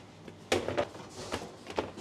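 Dough divider-rounder machine cycling on a batch of bagel dough: one clunk about half a second in, then a couple of faint knocks.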